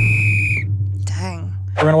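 A single shrill whistle blast, like a referee's whistle, lasting about two-thirds of a second as the music cuts off, over a low steady hum. It marks time being up.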